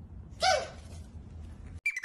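Pug puppy giving one short, high yap about half a second in, over a low background hum. Plucked-guitar music cuts in near the end.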